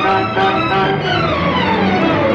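Background film score played by bowed strings, with a quick run of notes falling in pitch through the second half.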